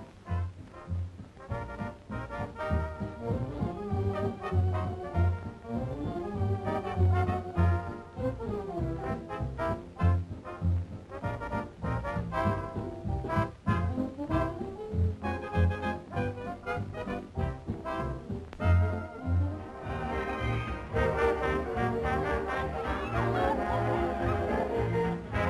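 Dance band music with brass, trombone and trumpet carrying the melody over a steady pulsing bass beat.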